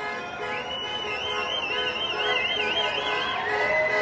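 A high siren-like tone warbling up and down about three times a second, dropping to a steadier, lower tone near the end, over a bed of steady held tones from the street.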